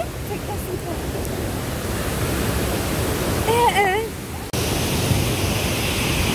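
Rushing river water in spate: a steady, dense noise of fast-flowing water. A short wavering vocal call comes about three and a half seconds in, and the noise changes abruptly a second later.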